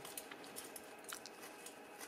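Faint clicks and plastic rubbing of LEGO Technic parts as a linear actuator is worked by hand to tilt a model's front blade.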